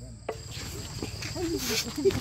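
Night insects, crickets among them, keeping up a steady high-pitched chirring drone. About a third of a second in, the sound changes abruptly and voices are heard at a distance over the insects, with a brief rustle near the end.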